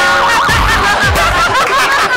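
Laughter over an electronic music sting, with deep bass hits that drop in pitch coming in about half a second in.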